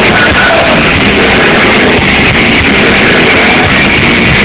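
A rock band playing loudly live, with electric guitar over a steady beat, heard from among the audience.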